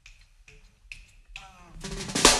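Four sharp finger snaps about half a second apart, a count-in for the jazz band. Near the end the band starts to come in.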